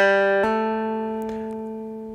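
Three-string electric cigar box guitar: a note picked on a downstroke, then about half a second in a fretting finger hammers on to a higher note, which rings on and slowly fades.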